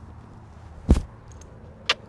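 A single sharp thump about a second in, the loudest sound, then a short, higher click near the end.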